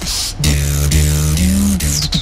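Vocal beatboxing into a handheld microphone: a brief hiss at the start, then a held buzzing bass note that bends up in pitch and back down near the end.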